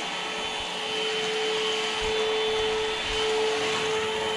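PerySmith Kaden Pro K2 cordless stick vacuum running as its brush head is pushed across a tiled floor: a steady motor whine over the rushing of air.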